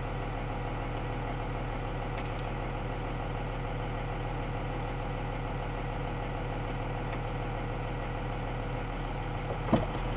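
Box truck engine idling steadily, heard from inside the cab, as the truck begins to creep forward at walking pace. A brief sharp sound, the loudest moment, comes near the end.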